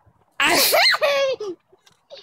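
A young child's excited squeal, one vocal burst that rises in pitch and falls back, lasting about a second.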